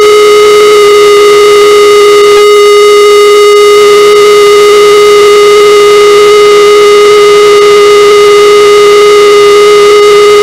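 Korg synthesizer holding one loud, steady tone that does not change in pitch, with a buzzy row of overtones over a bed of hiss.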